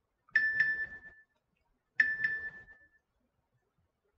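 A bright ding ringing twice, each time a quick double strike on the same pitch that rings out and fades over about a second.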